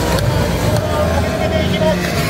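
Racing motorcycles' engines as the bikes pass along the straight on a warm-up lap, a loud, steady engine sound.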